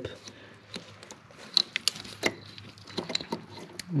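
Scattered light clicks and taps, about half a dozen at irregular intervals, as a BMW ASC actuator cable end is pushed by hand into its clip on the actuator.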